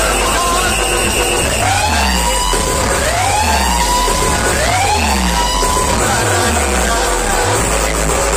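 Loud DJ dance music played through a large outdoor speaker-stack sound system, with a heavy bass beat. Three rising siren-like sweeps come one after another in the middle.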